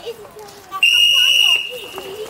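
A whistle blown once: a single high, steady note that starts a little before halfway in, loud for under a second and then fading. Children's voices are faintly heard around it.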